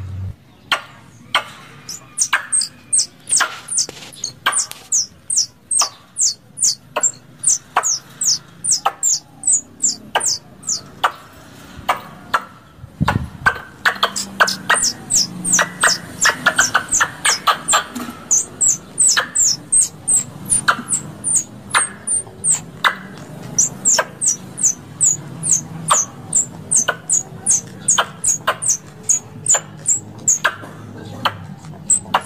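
Plantain squirrel (tupai kelapa) calling: a long run of sharp, high-pitched chips, about two or three a second, with a short pause about eleven seconds in. There is a dull thump around thirteen seconds. This is the kind of call used as a lure to draw squirrels in.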